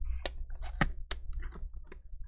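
Irregular light clicks and taps, three of them sharper, from a MacBook Air's display hinges and metal parts knocking as the hinges are slid into the laptop's base.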